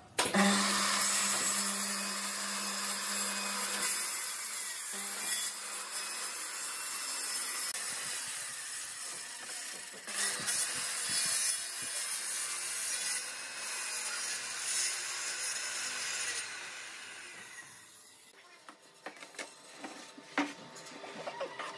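Makita circular saw starting up and crosscutting through a thick pine tabletop panel, a loud steady cutting noise with a brief dip about halfway. The saw winds down over the last few seconds.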